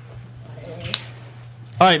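A single light clink about a second in, over a steady low hum, in a quiet lull before a man starts speaking near the end.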